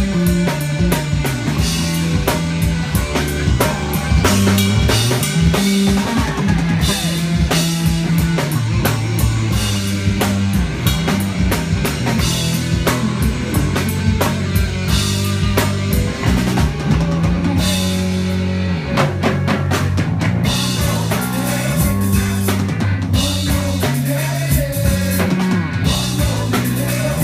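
Live rock band playing a song at full volume: a busy drum kit with snare and bass drum hits over electric bass and electric guitar.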